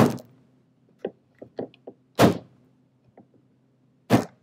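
Hand pounding a wooden bat down onto the bat pins of a Shimpo Aspire tabletop pottery wheel. There is a loud thump at the start, a few lighter knocks, and another loud thump a little past two seconds in. The bat is wobbly and not yet fully seated on the pins.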